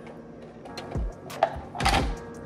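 A sip from a plastic cup over faint background music, with two soft low thumps, about a second in and again near the end.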